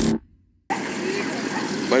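A glitchy logo-transition sound effect with a deep rumble cuts off suddenly just after the start. After about half a second of silence, the steady noise of a vehicle engine running comes in.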